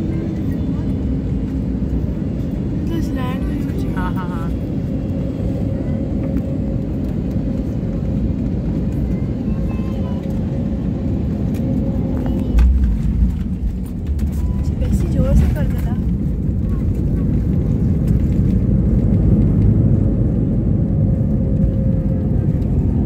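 Airliner cabin noise during landing: a steady engine and airflow rumble heard from inside the cabin. About halfway through comes a sudden low thump, and the rumble then grows louder toward the end as the plane rolls down the runway.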